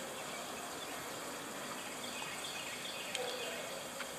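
Steady, faint outdoor background hiss with a small click about three seconds in.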